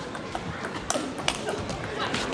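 Table tennis rally: the celluloid ball clicking sharply off the rackets and the table, several quick ticks with the strongest about a second in.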